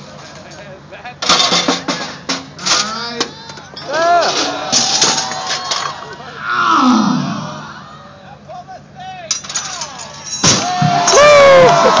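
Clanks and knocks of a giant human-sized Mouse Trap chain-reaction machine running, with a crowd calling out. A sharp crash comes near the end, followed by loud crowd cheering.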